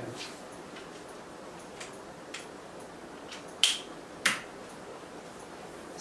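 A few light ticks, then two sharp clicks a little over half a second apart about three and a half seconds in, over faint steady room hiss.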